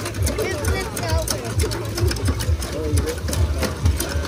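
Children working cast-iron hand water pumps: repeated clacking of the pump handles and water splashing into the troughs, over crowd chatter.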